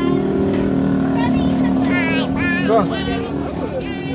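An engine running with a steady, even hum, with people's voices over it.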